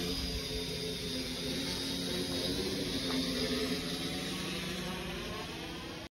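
Multirotor drone hovering in flight, its motors and propellers giving a steady hum with several held tones over a rushing hiss.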